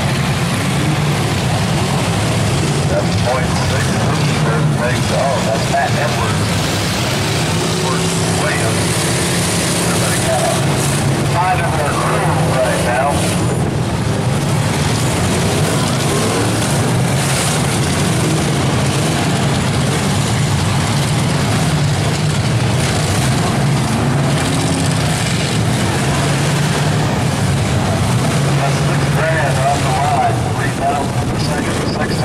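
Demolition derby car engines running steadily together, with voices shouting over them.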